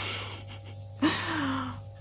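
A person's breathing: an audible breath, then about a second in a short breathy voiced sigh that falls slightly in pitch, over a steady low hum.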